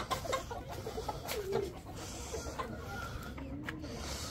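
Chickens clucking quietly now and then, with one short call about one and a half seconds in.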